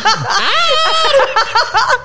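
A woman and a man laughing hard together: short bursts of laughter at first, then a long, high-pitched laugh through the middle that dies away near the end.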